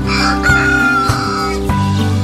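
A rooster crowing once, a single call of about a second and a half, over steady background music.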